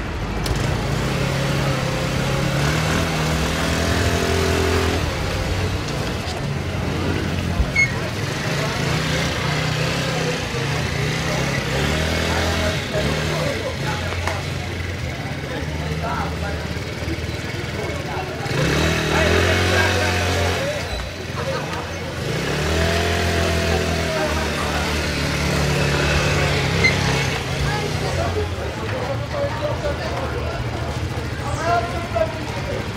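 Shineray scooter engine running steadily, its pitch rising and falling a few times as it is revved and ridden.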